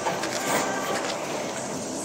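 Steady background noise of a large gym hall, with no distinct knocks or creaks from the bar.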